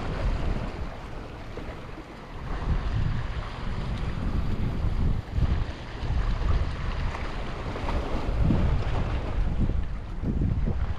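Wind buffeting the microphone in uneven gusts over small sea waves washing and splashing against rocky limestone shoreline.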